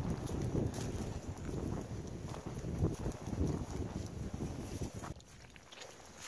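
A hiker's footsteps crunching through dry leaf litter on a forest trail, with wind buffeting the microphone. The sound eases off about five seconds in.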